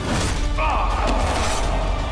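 Dramatic film score under sword-fight sound effects: a sharp impact at the very start, then a man's yell from about half a second in.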